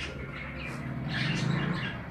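Birds chirping in short, repeated bursts.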